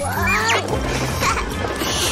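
Bouncy children's cartoon background music, with a short high squeak from the cartoon bunny near the start.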